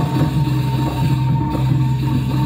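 Balinese gamelan playing: bronze metallophones struck in a steady, even rhythm over a sustained low tone, with drums.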